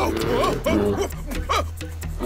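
Several short, wavering vocal cries and grunts from cartoon ape-man characters over background music.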